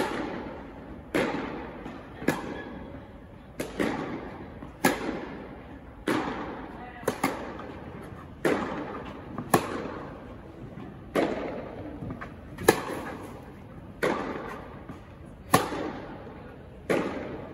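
Tennis balls struck by rackets and bouncing in a forehand rally, a sharp pop about every second. Each pop has a long echoing tail from the indoor tennis hall.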